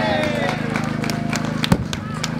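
A long held shout fades out about half a second in, followed by scattered sharp claps from a few people, the loudest near the end. A steady low electrical hum runs underneath.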